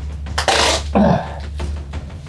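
A man's breathy, straining exhale followed by a short falling grunt, as he struggles against duct tape wrapped around him.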